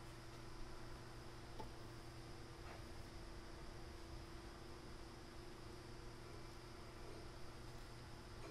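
Quiet workshop room tone: a steady low hum and hiss, with a few faint clicks in the first few seconds.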